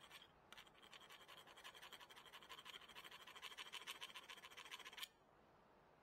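Flat metal hand file scraping a small brake part in rapid short strokes. The filing starts about half a second in and cuts off suddenly about five seconds in.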